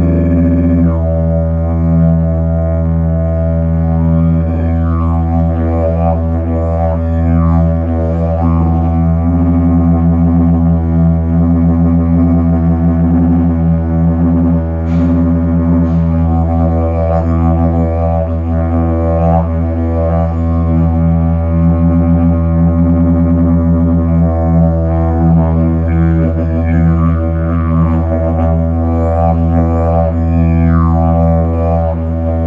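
Hemp didgeridoo in the key of E playing an unbroken low drone, kept going by circular breathing, with overtones sweeping up and down in a repeating rhythmic pattern.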